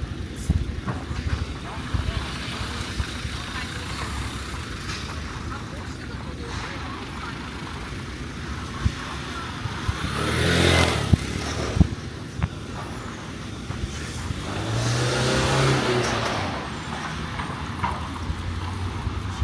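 Street noise with a Vespa scooter's engine passing close by, swelling and fading about ten seconds in, then a second motor vehicle's engine rising and fading a few seconds later. Voices of passers-by and footsteps run underneath.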